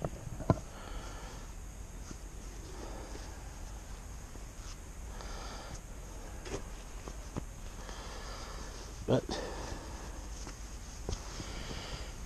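Quiet rustling and handling of fabric curtain panels, with a sharp click about half a second in and a short vocal sound, like a sniff or mutter, just after nine seconds.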